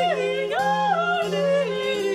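Female voices singing an 18th-century Brazilian modinha in a classical style, with vibrato and leaps in the melody, over a held low accompaniment note.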